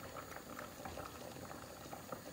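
A large pot of pasta water at a rolling boil, bubbling faintly with many small pops.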